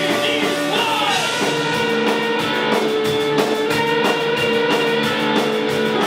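A live rock band playing: electric guitars holding sustained notes over a drum kit keeping a steady beat.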